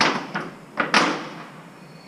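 A few loud bangs on a thin sheet-metal awning roof, four knocks with the loudest about a second in, each with a short rattling ring, as the structure is tested underfoot.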